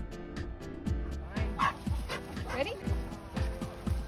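A German Shorthaired Pointer barking twice, about a second and a half and two and a half seconds in, over background music with a steady beat.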